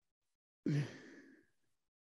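A man's sigh: one short breathy exhale with a little voice at the start, coming about two-thirds of a second in and fading away over about half a second.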